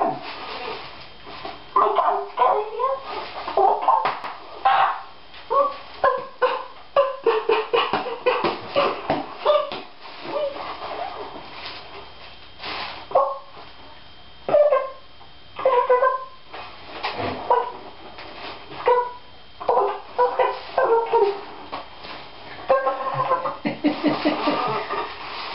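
A person's voice making short, high, wordless sounds over and over, one or two a second with short pauses between, like exaggerated whimpering.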